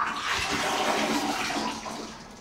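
A toilet flushing: a sudden rush of water that lasts nearly two seconds and fades away near the end.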